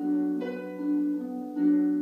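Solo harp playing a gently rocking pattern of plucked notes over held low notes, with fresh notes struck about half a second in and again near the end.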